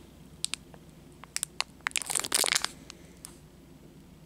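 Shiny wrapper of a Topps Series 1 baseball card pack crinkling as it is handled. A few scattered crackles are followed by a denser burst of crinkling about two seconds in, which dies away after about three seconds.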